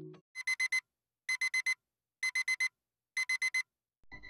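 Digital alarm clock beeping: four quick, high beeps in a row, repeated four times about a second apart, sounding the 7 a.m. wake-up alarm.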